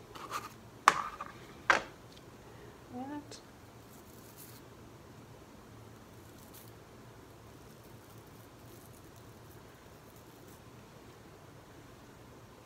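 Paint-loaded toothbrush bristles flicked with a thumb to spatter paint: a few short, sharp scratchy flicks in the first two seconds, then only faint sound.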